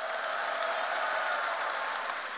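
Large audience applauding, a steady even clatter of many hands.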